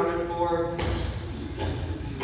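A young performer's voice holding one long, steady note that stops a little under a second in. Shuffling and light knocks on the stage follow.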